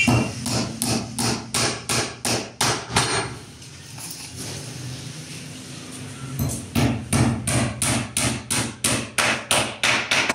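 Claw hammer striking the edge of a pine wood door, quick regular blows about three or four a second, with a pause of about three seconds in the middle before a second run of blows.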